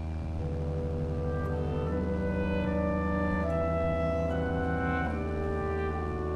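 Slow background music with long held notes, the melody moving to a new note about once a second over a steady low hum.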